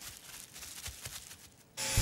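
Faint irregular rustling and scraping. Near the end a loud garden leaf vacuum starts abruptly, running with a steady low hum and a hiss.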